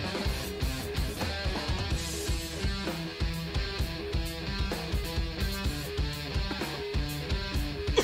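Instrumental progressive rock song: electric guitar riffing over a drum kit keeping a steady beat.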